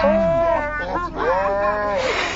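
A cartoon boy's drawn-out sneeze, altered in speed and pitch so it comes out low and slow: a long held vocal tone, then a second long tone that rises and falls about a second later.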